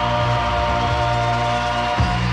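Gospel vocal trio holding a long, steady final chord of a song, which cuts off at the very end.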